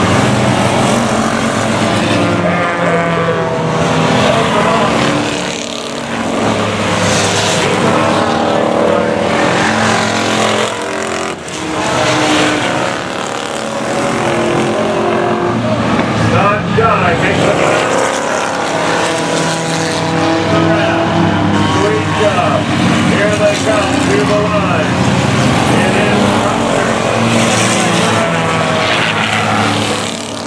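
Engines of a pack of enduro stock cars racing on an oval track, several running at once, their pitches rising and falling as the cars accelerate and pass.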